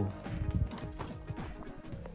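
Quiet background music with light clicks and rustles of a paper catalogue being handled and folded shut.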